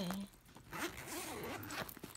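Zipper on the middle compartment of a satchel handbag being pulled open in one continuous stroke of a bit over a second, starting about half a second in.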